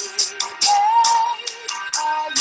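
Worship music: a lead voice holding long sung notes over a band, with short, bright percussion hits several times a second.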